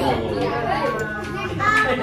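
Several adults and young children talking over one another in a room, with a steady low hum beneath the voices.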